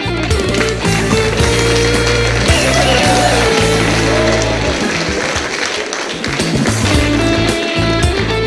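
Live Arabic rock band playing: an electric guitar melody with bent notes over bass guitar and drums.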